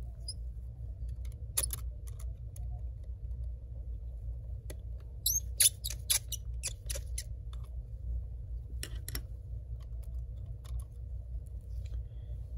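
Small precision screwdriver backing out tiny screws from a laptop's internal brackets: scattered light clicks and a few short high squeaks, over a steady low hum. The squeaking comes from the screwdriver itself, which is worn and making noise.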